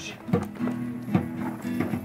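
Music on a plucked string instrument: a few strummed chords, each ringing on as a held note.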